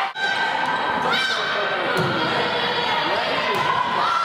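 Game sound of an indoor volleyball match: players' and spectators' voices echoing in a large gym, with the thud of ball contacts. The sound briefly drops out just after the start.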